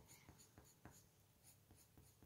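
Faint scratching of a coloured pencil on paper, in short irregular strokes, as a drawing is shaded in.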